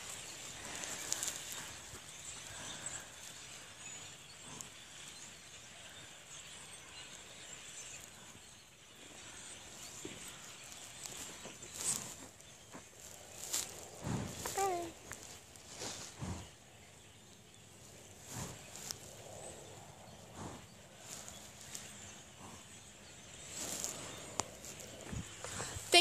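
Quiet outdoor sound with scattered soft knocks and a few brief, faint voices, the clearest about halfway through.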